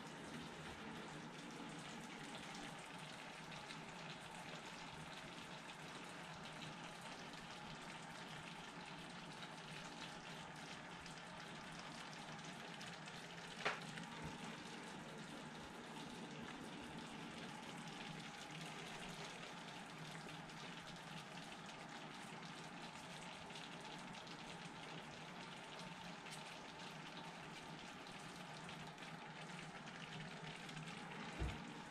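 Faint, steady sizzling hiss of tomato sauce simmering in a pan on the stove, over a low steady hum. A single sharp click comes about halfway through.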